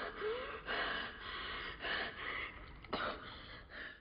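A boy gasping for breath, about four heavy, ragged breaths roughly a second apart, with a short whimper at the start: he is catching his breath after being held underwater.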